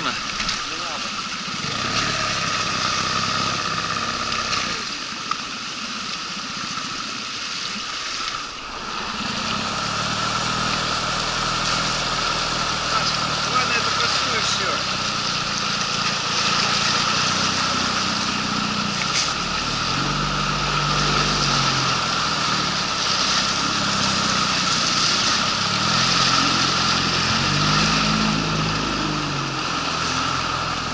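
Outboard motor with a water-jet drive running under load as an inflatable boat pushes upstream through shallow rapids, over the rush of water. The engine note rises and falls again and again with the throttle and gets louder after about nine seconds.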